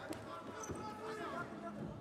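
Dull thuds of wrestlers' feet stepping and stamping on a wrestling mat as they hand-fight, with voices calling out in the hall.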